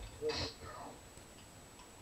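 A person speaking briefly in the first half-second, then quiet room tone.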